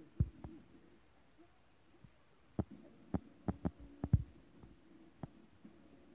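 Irregular soft thumps and knocks, a quick run of them in the middle, over a faint steady hum.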